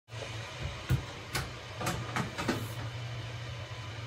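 A steady low hum with five light knocks and clicks in the first two and a half seconds.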